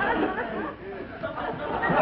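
Indistinct overlapping voices, a murmur of chatter with no single clear speaker, dipping briefly in the middle.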